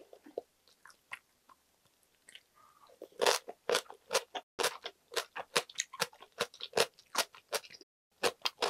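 Crunchy kimchi being chewed: soft clicks for the first few seconds, then from about three seconds in a quick, steady run of sharp crunches, about three or four a second.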